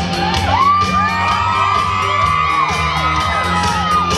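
Live rock band playing an instrumental intro: drums with a steady cymbal beat about four strokes a second, a sustained bass, and a lead line that slides up and down in pitch, with whoops from the audience.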